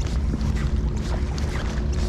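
Wind rumbling on the microphone, with a faint steady low hum underneath and light scattered clicks.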